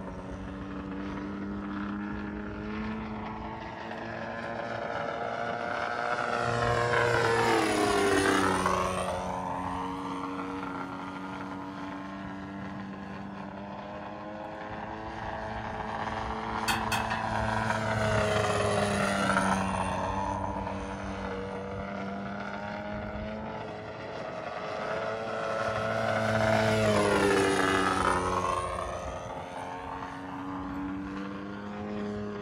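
Radio-controlled aerobatic model airplane's engine and propeller running steadily as it flies. It grows louder and drops in pitch three times as it sweeps past, about eight, nineteen and twenty-seven seconds in.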